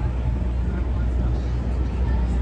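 City street ambience: a steady low rumble under a haze of background noise, with faint voices of people nearby.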